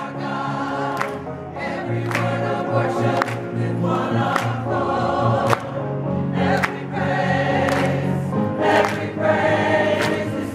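A choir singing together, clapping their hands on the beat about once a second.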